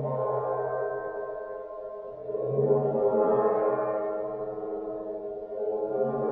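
A Chinese chao gong rubbed with a superball mallet, drawing sustained, wavering tones over the gong's many ringing overtones. The sound swells again about two seconds in and once more near the end.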